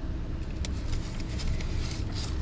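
Steady low rumble of a car's engine and road noise, heard from inside the cabin.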